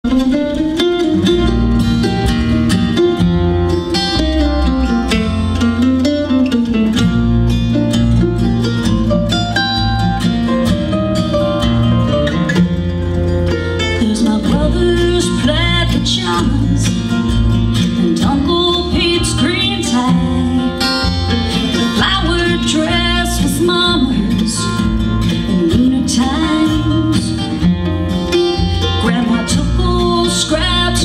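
Live acoustic bluegrass band playing: mandolin, upright bass and two acoustic guitars, with a woman singing lead.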